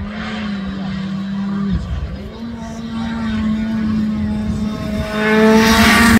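Hyundai Rally2 car's turbocharged four-cylinder engine at full power on a gravel stage, with a short lift about two seconds in. The revs then climb as it closes in and passes close by, loudest near the end, before the sound cuts off suddenly.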